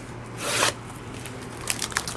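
Scissors slitting the plastic shrink wrap on a sealed card box: one short rasp of cutting plastic about half a second in, then a few faint crinkles near the end.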